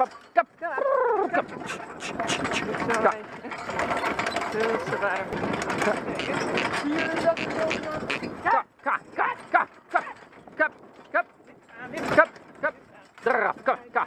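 Single-horse marathon carriage driven fast through a combined-driving course: a loud, steady rattling rush of wheels and hooves on sand for several seconds, then a run of separate short, sharp hoof and harness sounds. The driver calls 'kom op', urging the horse on.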